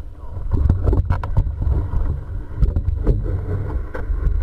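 Muffled underwater sound picked up by a GoPro in its waterproof housing: an uneven low rumble of moving water, with scattered small clicks and knocks.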